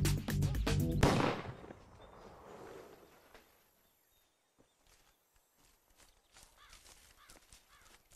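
Rhythmic background music ends about a second in on a final hit that rings out. Then, at a low level, faint footsteps on dry ground and birds calling with short repeated calls.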